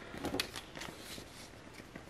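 Round oracle card being slid across a cloth-covered table and picked up by hand: a few light clicks and rustles, the loudest cluster a little under half a second in, then fainter ticks.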